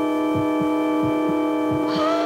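Eerie film-score drone: a held chord of steady electronic-sounding tones over a low pulse beating in pairs about every 0.7 s, like a heartbeat. Near the end a bright metallic gong-like hit rings out, its tone sliding downward.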